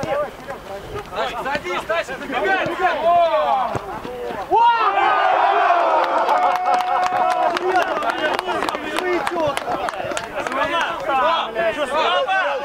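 Men shouting on a football pitch, several voices overlapping with unclear words. From about four and a half seconds in the shouting gets louder and denser, and one voice holds a long call.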